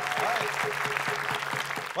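Studio audience applauding over a short music cue that holds one low note and stops just before the end, with a few voices mixed in.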